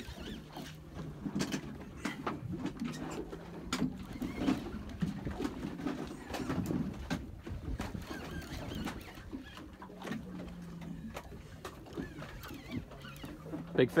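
Conventional fishing reel being cranked, with scattered clicks and knocks over a steady low hum.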